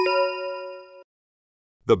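A bell-like chime: two quick strikes that ring on for about a second and then cut off abruptly. A voice starts speaking near the end.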